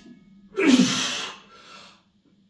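A lifter's loud, breathy grunt of effort, falling in pitch, starting about half a second in and lasting about a second, as he holds a heavy log press locked out overhead.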